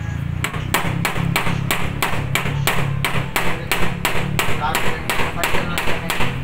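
Rapid, evenly spaced metal knocks, about three a second, from tapping at the fittings inside an air-conditioner unit, over a steady low hum.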